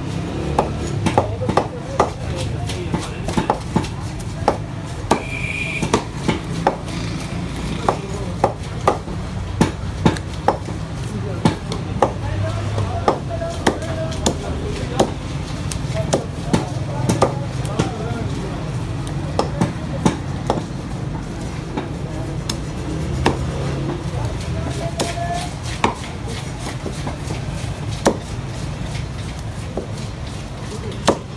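Knife and cleaver chopping fish on a thick wooden chopping block: many sharp, irregularly spaced knocks over a steady low background rumble.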